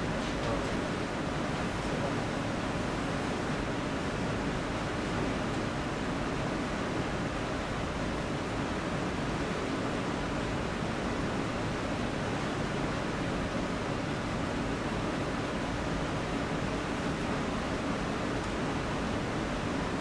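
Steady hiss of room tone with no distinct events.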